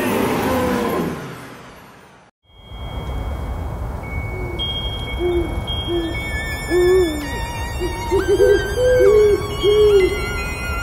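A pop song with a beat fades out over the first two seconds. After a brief silence, a night-time sound effect follows: a windy hiss with a series of short owl hoots and thin, high twinkling tones.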